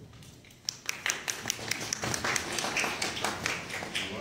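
A small group of people clapping by hand, starting a little under a second in: sharp, irregular, scattered claps.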